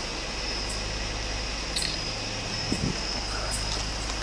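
Steady outdoor background noise with a low hum, a thin high steady tone and hiss, and a few faint rustles and ticks from movement near the microphone.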